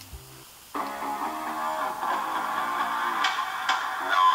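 A TV theme song with guitar, played from a smartphone, starts suddenly under a second in and then plays on steadily.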